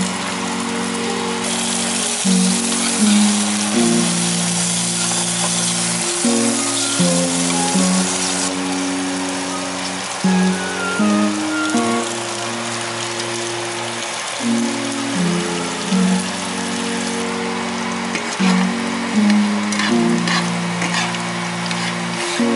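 Butter and then eggs sizzling in a hot nonstick frying pan, a steady frying hiss that is strongest for the first several seconds and rises again near the end. Background music plays throughout with a low, changing melody.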